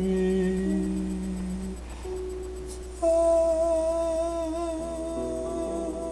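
Music: hummed vocal notes held long and layered in harmony. A higher sustained note comes in suddenly about halfway through over the lower ones.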